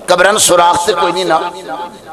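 Only speech: a man speaking.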